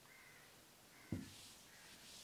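Near silence with faint short calls recurring several times in the background and a single knock about a second in. Near the end comes the faint rubbing of a duster wiping the whiteboard.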